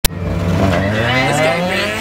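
A car engine accelerating, its pitch climbing steadily for nearly two seconds, after a sharp click at the very start.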